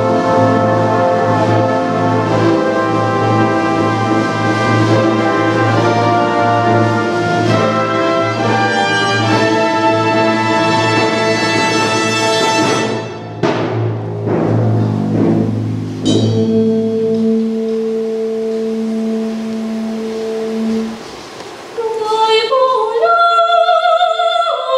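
Symphony orchestra playing a full, loud operatic passage over a sustained low bass note. It breaks off about halfway into a quieter held chord, and near the end a woman's voice begins singing over the orchestra.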